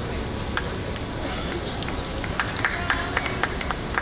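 Indoor diving-pool hall ambience: a steady wash of noise from the water and the hall, with faint distant voices and scattered sharp clicks and knocks, several of them between two and three seconds in.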